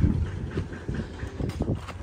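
Low rumble of wind on the microphone, with a few light, irregular knocks.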